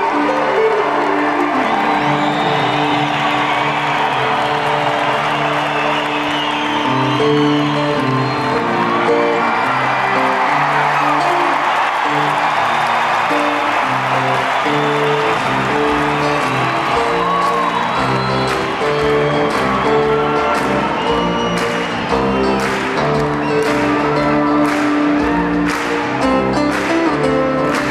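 Acoustic guitar picking and strumming through a concert PA while a large arena audience applauds, cheers and whoops over it. The applause thins out near the end, leaving the guitar's strums on their own.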